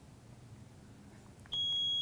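Quiz lockout buzzer system beeping: one steady high electronic tone that starts about one and a half seconds in, signalling that a player has buzzed in to answer.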